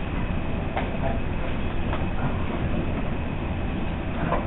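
Steady noisy room background with a low rumble and a faint click under a second in.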